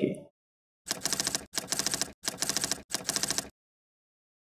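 Typing sound effect: rapid keystroke clicks in four short runs, each a little over half a second, with brief gaps between them.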